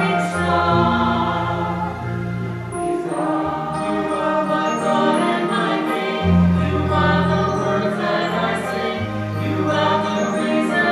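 Small mixed choir of men and women singing a hymn in harmony, accompanied by an electronic keyboard whose sustained low chords change every two or three seconds.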